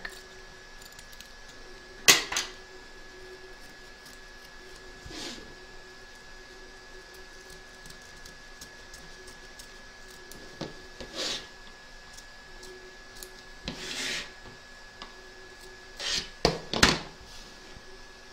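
Small pinch-action precision scissors trimming fabric close to an embroidery stitch line, with handling of a plastic embroidery hoop: a few scattered quiet snips and knocks, the sharpest about two seconds in and a small cluster near the end.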